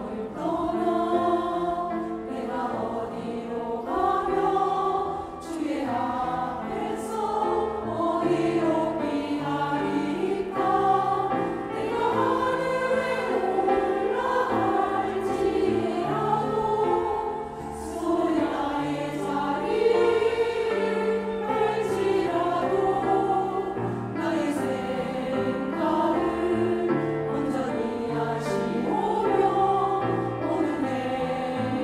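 Women's church choir singing a hymn anthem in Korean, many voices together in sustained phrases, with low accompaniment notes held underneath.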